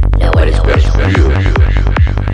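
Psychedelic trance music: a fast, steady kick drum and rolling bassline, with a swirling, noisy synth effect over them.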